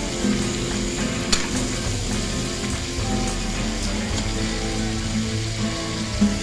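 Chicken, potatoes and carrots sizzling in a wok as they are stirred with a spatula, with a light tap of the spatula about a second in. Music plays in the background.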